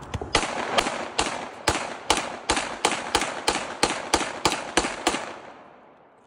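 A handgun fired rapidly, about fifteen shots at two to three a second, each crack echoing. The string stops about five seconds in and the echo fades.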